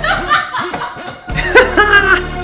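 A woman laughing in short bursts, then, about one and a half seconds in, a man's louder laugh, over background music.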